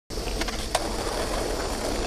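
Skateboard wheels rolling on street asphalt with a steady rumble, and a sharp clack a little under a second in as the board is dropped to the ground.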